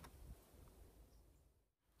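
Near silence: faint room tone that drops to complete silence near the end.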